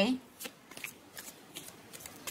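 Tarot cards handled or shuffled by hand: about five faint, short flicks spread over two seconds.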